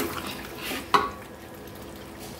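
Wooden spatula stirring chunks of meat in gravy in a large aluminium pot over a steady sizzle, with a sharp scrape against the pot at the start and again about a second in.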